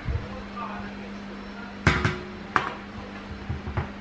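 Two sharp knocks, a little under two seconds in and again about half a second later, then a few softer thumps near the end, all over a steady low hum.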